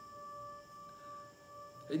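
A faint, steady ringing tone with overtones, held at one pitch and fading out near the end.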